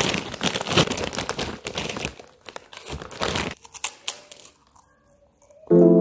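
Plastic rice-cake packet crinkling as it is pulled open and handled, in fits for about three and a half seconds, then quieter. Near the end, keyboard music starts suddenly and loudly.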